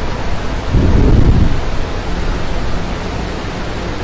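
Steady hiss with a low rumble, swelling briefly about a second in: background noise picked up by the microphone.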